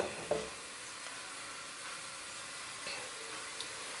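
A thin layer of cooking oil sizzling faintly and steadily as it heats in a nonstick frying pan, with one light knock shortly after the start.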